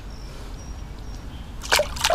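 Smallmouth bass being released from a hand into river water beside a kayak: low water sloshing over a steady low rumble, then a short splash near the end as the fish goes.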